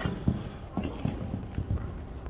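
Hooves of a cantering horse striking sand arena footing: a run of dull, irregular thuds as the horse passes close by.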